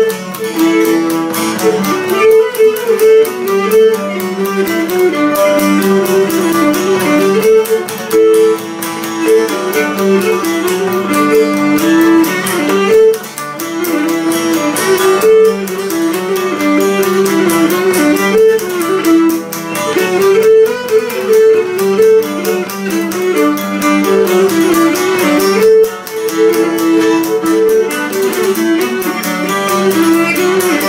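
Cretan lyra bowing a melody of quickly changing notes, accompanied by a laouto.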